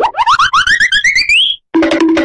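Cartoonish electronic sound effect: a rapid run of short rising chirps, about nine a second, each pitched a little higher than the one before, climbing for about a second and a half before stopping suddenly.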